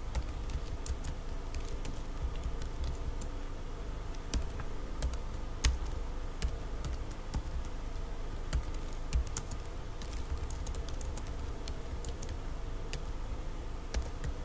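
Typing on a computer keyboard: irregular runs of key clicks with short pauses between words, over a faint steady hum.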